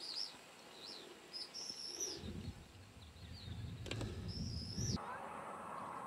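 A bird calling: a series of short, high whistled notes, some rising and falling, the longest near the end. A low rumble runs under the calls from about two seconds in and stops sharply about five seconds in.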